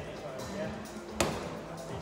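A medicine ball slammed down onto the gym floor once, about a second in, with a single sharp thud.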